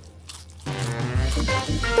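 Popcorn being chewed with a crunch, over background music; the crunching and music come in about two-thirds of a second in, after a quieter start.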